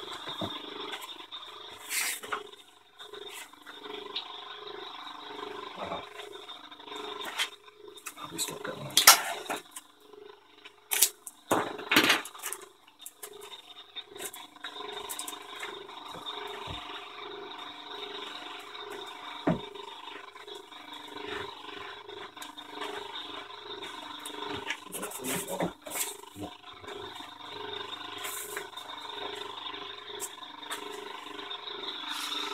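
Compressor pump running steadily with an even, repeating pulse as it holds vacuum on a wing layup in a vacuum bag. Irregular rustles and knocks from the bag and paper being handled, loudest about nine and twelve seconds in.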